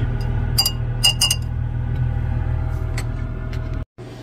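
A few light glass clinks on a glass beaker, each with a short high ring, over a steady low hum.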